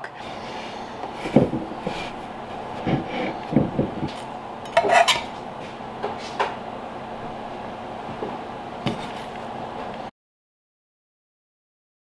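A metal utensil clinking and scraping on a baking sheet, a handful of scattered knocks, as baked pastries are lifted off into a cloth-lined basket, over a steady background hum. The sound cuts to dead silence about ten seconds in.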